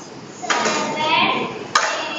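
Children's high voices calling out from about half a second in. One sharp clack comes near the end, a glass being dropped into a tub.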